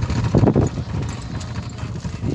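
Goats' hooves knocking and shuffling irregularly on the floor of a vehicle, over a steady low rumble.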